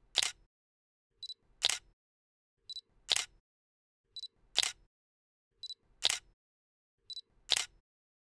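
Camera shutter sound, each shot a light tick followed by a louder snap, repeating evenly about every second and a half, six times.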